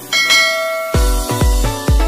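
A bell chime sound effect rings and fades, then electronic music with a heavy kick drum, about two beats a second, starts about a second in.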